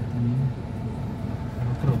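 A car's engine running as it rolls slowly through a parking lot, heard from inside the cabin as a steady low rumble. A man's voice starts near the end.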